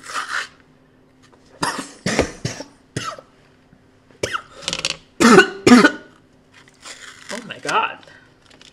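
A woman coughing in a run of short, harsh coughs, the loudest two a little past the middle, after breathing a powdered supplement up her nose; strained vocal sounds come between and after the coughs.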